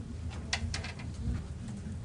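Meeting-room background: a steady low hum with a muffled murmur of voices, and a few sharp clicks about half a second in.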